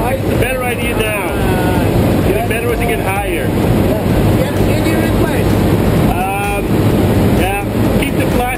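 Small jump plane's engine and propeller droning steadily, heard loud inside the cabin in flight, with voices talking over it now and then.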